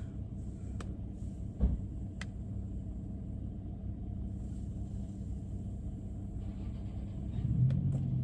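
Steady low rumble of a car's engine idling, heard inside the cabin. A few faint clicks and a soft knock about a second and a half in come over it.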